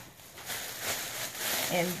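Plastic shopping bag rustling and crackling as it is handled and opened, with a short spoken word near the end.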